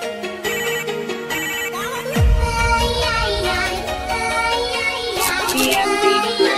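Retro-style electronic dance remix music with a bright synth melody; about two seconds in, a falling sweep drops into a heavy bass section.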